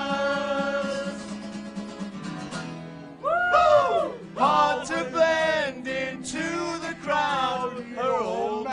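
Acoustic guitar with a small group singing along: a long held note fades over the first couple of seconds, then two men's voices sing phrases with sliding pitch.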